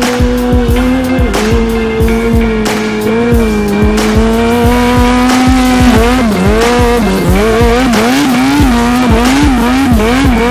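A small stunt motorcycle's engine held at high revs, then revving up and down in quick swings for the last few seconds as the bike slides through turns. Music with a steady beat plays underneath.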